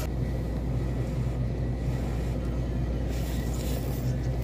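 A steady low background rumble with a faint hiss above it.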